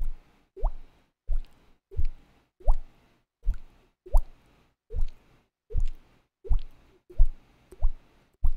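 Mouth-made water-drop sound: a string of about a dozen short plops, each a quick upward-gliding pop, coming roughly one every 0.7 seconds.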